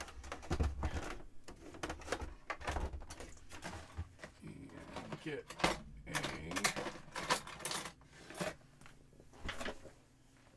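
Handling noise from a heavy plastic-cased Power Macintosh all-in-one computer being lifted, moved and set down: a string of knocks, clicks and low thumps.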